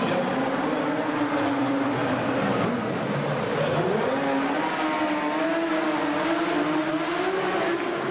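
Speedway sidecar racing outfit's engine running hard on a dirt oval. Its pitch drops about three seconds in, then climbs again and holds high.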